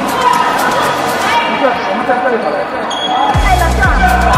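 Voices calling out in a large sports hall during an air volleyball rally, with a few sharp hits of the ball. About three seconds in, music with a deep thudding beat comes in over it.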